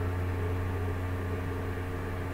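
A steady low hum with a faint even hiss and no distinct events: constant background machine or electrical noise.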